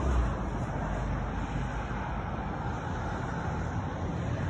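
Steady outdoor background noise: a low rumble with a hiss above it and no distinct event, slightly louder at the very start.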